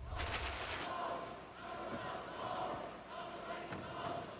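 Arena crowd at a cycle-ball match chanting and cheering, a mass of voices holding wavering calls that swell and fade, urging the trailing Czech team to come back.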